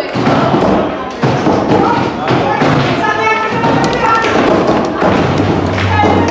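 Table football game in play: the hard ball being struck by the plastic figures and knocking against the table, with rods banging, in a run of irregular sharp knocks and thuds.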